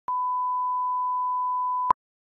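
Broadcast line-up test tone: a single steady 1 kHz reference beep, the tone that goes with colour bars, held for almost two seconds. It starts with a click and cuts off suddenly with a short louder blip.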